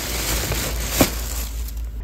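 Thin plastic plant sleeves crinkling and rustling as a wrapped potted plant is pushed back into its cardboard shipping box, with one sharp crackle about a second in; it stops shortly before the end.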